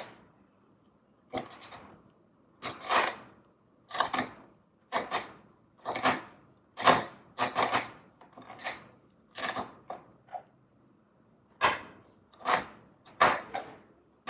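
Large chef's knife chopping a crisp chip into crumbs directly on a stainless steel worktop, the blade knocking on the metal in short, sharp strokes about once a second, slightly irregular.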